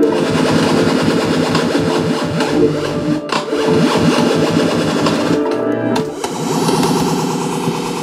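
Korg MS-20 analog synthesizer played live, making blip sounds in quick succession over a dense, steady bed of sustained tones from the layered track.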